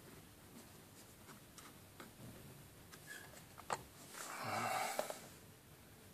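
Quiet room with a small click, then a breathy exhale lasting about a second near the end.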